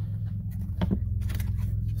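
A clear plastic case of heat staples is picked up and handled, giving a few light clicks, over a steady low background hum.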